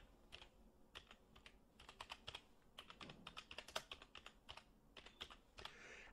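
Faint typing on a computer keyboard: an uneven run of quick key clicks as a word is typed out.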